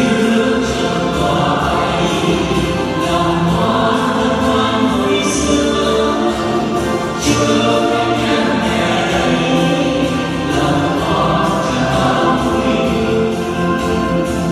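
Vietnamese Catholic devotional song: a choir singing over instrumental accompaniment, running steadily throughout.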